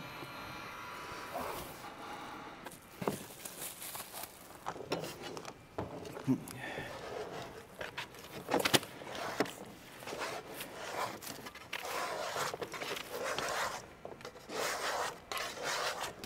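Plastic sheeting rustling as a clay slab is unwrapped and laid on the table, with scattered light knocks and scrapes of handling.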